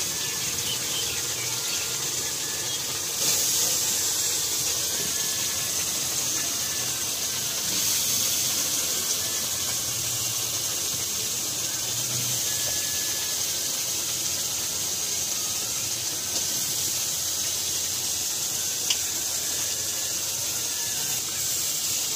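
Hot oil and masala sizzling steadily in an iron kadhai over a wood-fired mud chulha as chopped ridge gourd is frying in it. The sizzle steps up slightly about three seconds in.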